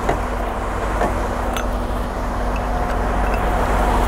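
Semi-truck tractor's diesel engine idling steadily, with a few light clicks as the coiled air lines are handled.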